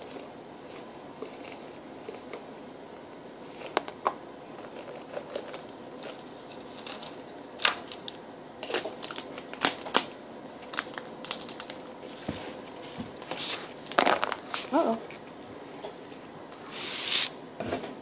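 Raisins shaken out of a canister into a disposable aluminium foil pan of crumbled bread, with the canister and pan handled: scattered light clicks, taps and crinkles, busier in the second half, and a short rustle near the end.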